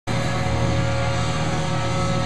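A rock band's electric guitars ringing through stage amplifiers in a steady drone: several held notes over a strong low hum, with no drum hits or beat.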